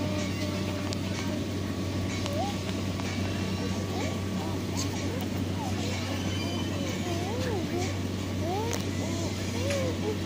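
Indistinct background voices, their pitch rising and falling, from about two seconds in, over a steady low hum.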